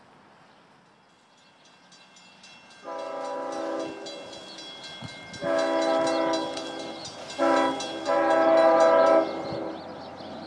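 Long Island Rail Road diesel train's horn sounding the grade-crossing signal: long, long, short, long, the pattern a train blows on approach to a road crossing.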